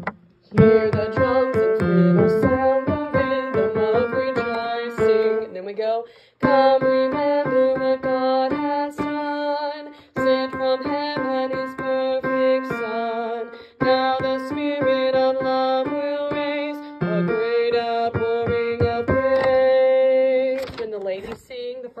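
Choral cantata music with piano accompaniment: sung lines and piano chords in phrases, with brief breaks about 6, 10, 14 and 17 seconds in.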